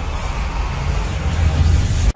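Loud soundtrack-style passage: a dense wash of noise over a deep, steady rumble, which cuts off abruptly right at the end.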